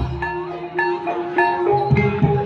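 Live Javanese gamelan-style accompaniment for an ebeg dance: mallet-struck keyed instruments ring out a repeating melody over a held tone. The hand drums pause and come back in near the end.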